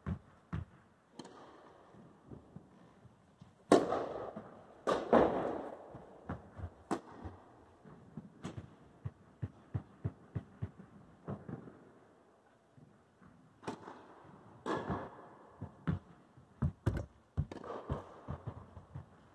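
Tennis balls struck with rackets in an echoing indoor tennis hall: a few ball bounces on the court, then loud racket hits about four and five seconds in, with scattered lighter knocks of bouncing balls and footsteps between. Two more loud hits come about three-quarters of the way through, followed by a quick run of bounces.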